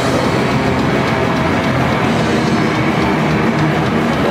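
A grindcore band playing live: a dense, steady wall of distorted electric guitars, bass and fast drumming through the club PA.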